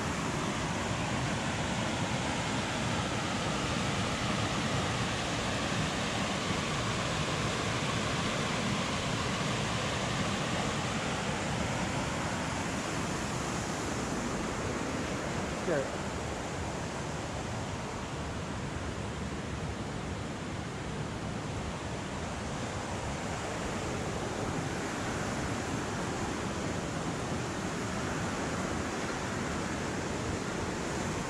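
Steady rush of river rapids and falls below a footbridge, with a single short knock a little past the middle.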